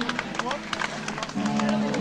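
Live rock gig recording: held electric band tones break off for about a second and come back in near the end, with indistinct voices and scattered sharp clicks underneath.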